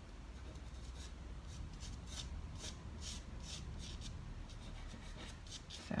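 Fingertips rubbing soft pastel into sanded pastel paper, a faint dry swishing in a steady back-and-forth of about two strokes a second as the colour is blended.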